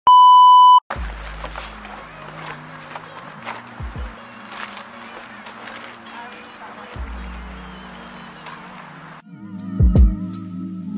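A TV test-pattern tone: one loud, steady high-pitched beep lasting under a second, cut off sharply, followed by background music with deep bass notes that changes near the end.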